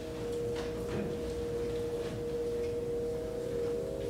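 A steady electronic tone of two held pitches ringing through the hall's sound system, with a few faint knocks from the stage.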